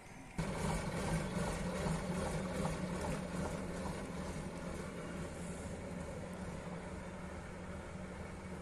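Krupp Büffel vintage truck's diesel engine running as the truck pulls away, a steady low engine note that starts abruptly about half a second in and slowly fades as it moves off.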